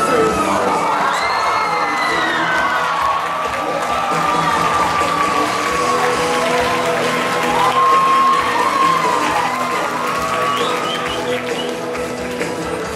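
An audience cheering and screaming over a country song, with many high-pitched shrieks and whoops that rise and fall in pitch throughout.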